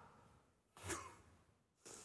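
Near silence, broken by two faint, short breaths from a man, one about a second in and one near the end.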